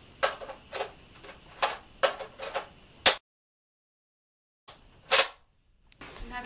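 A quick, irregular run of sharp clacks and knocks, about eight in three seconds. The sound then cuts out to dead silence for about a second and a half before one louder knock.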